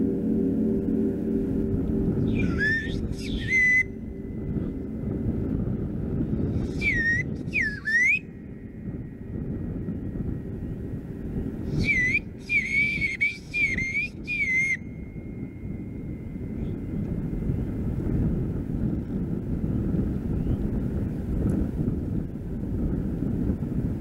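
A bird-call whistle blown in three bursts of warbling, dipping chirps imitating birdsong, about two, seven and twelve seconds in, the last the longest. A Paiste gong's hum dies away in the first couple of seconds, and wind rumbles on the microphone underneath.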